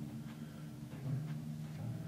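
Copper pedal timpani ringing softly at low pitch, with a couple of light new notes, about a second in and near the end, and faint taps.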